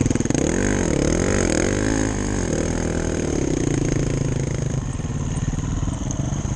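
Dirt bike engine revving, its pitch rising and falling several times over the first couple of seconds, then running more steadily as the bikes ride down a dirt trail.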